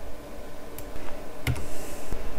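Computer keyboard and mouse clicks as a value is entered into a terminal: a few sharp clicks, the loudest with a low thud about one and a half seconds in.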